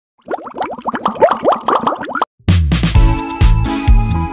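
A quick run of many short rising plops, an edited-in cartoon-style transition sound effect, lasting about two seconds. After a brief gap a new background music track starts with a strong beat.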